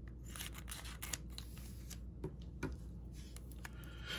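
Scissors cutting open a trading-card pack: a run of quiet, irregular snipping clicks as the blades work across the top of the wrapper.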